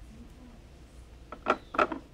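A few short, light clicks and scrapes in the second half as a 9-volt battery's wire lead is pushed into a plastic solderless breadboard.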